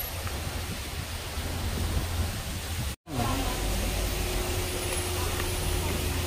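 Outdoor street noise with idling car engines giving a steady low rumble. The sound cuts out abruptly for a moment about halfway through, then the rumble returns with a steady hum added.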